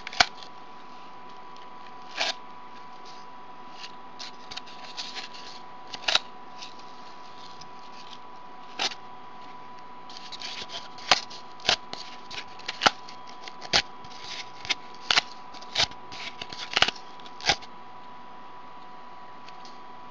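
Yarn threads being pulled into and out of the slits of a cardboard bracelet loom and the card being handled, giving short sharp clicks and rustles at irregular intervals, more frequent in the second half.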